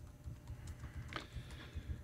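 Faint, scattered clicks and soft low thumps, in the manner of light typing on a computer keyboard.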